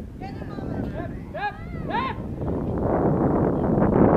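Several short, high-pitched shouted calls that rise and fall in pitch, about three in the first two seconds, over a haze of outdoor noise that grows steadily louder in the second half.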